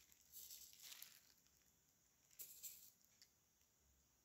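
Faint patter of sugar sprinkles dropping from the fingers onto chocolate-coated cookies, in two short bursts: one about half a second in and one just past two seconds in. Near silence otherwise.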